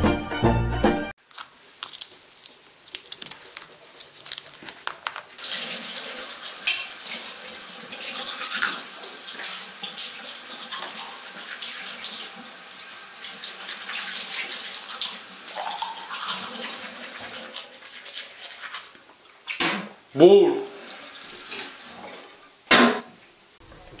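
Teeth being brushed with a manual toothbrush, a scratchy scrubbing, with water running into a bathroom sink. There are two louder sudden sounds near the end.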